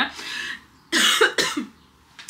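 A woman's breathy laugh, then a short burst of coughing about a second in, from pistachio latte that went down the wrong way.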